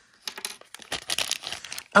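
Paper blind bag being ripped open and handled: a quick run of sharp crinkles and crackles.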